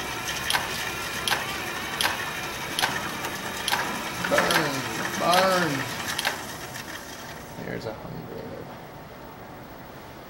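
Cordless drill running, turning a plywood coil-winding jig that winds wire onto a generator coil, with a regular click about every 0.8 s. The running stops at about three-quarters of the way through.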